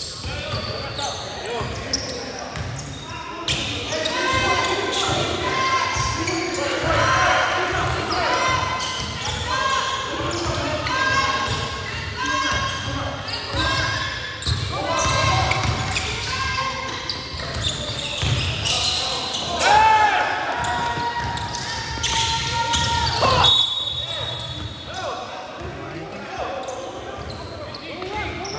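Basketball game play on a gym floor: a ball bouncing, sneakers squeaking on the hardwood, and players' voices calling out.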